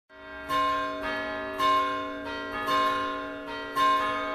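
A peal of church bells, a new bell struck about twice a second, each ringing on under the next.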